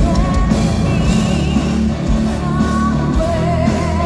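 Live symphonic metal band playing: a woman sings long notes with vibrato over distorted guitars, bass and drums.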